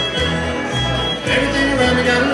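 Live bluegrass band playing an instrumental passage: fiddle and banjo over an upright bass plucking about two notes a second.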